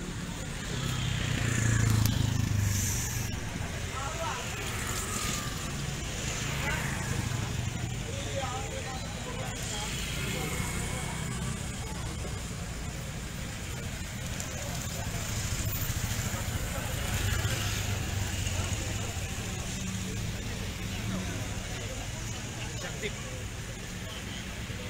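Road traffic passing close by, with indistinct voices of a roadside crowd. A car passes about two seconds in, the loudest moment, and motorcycles pass again near the seventeen-second mark.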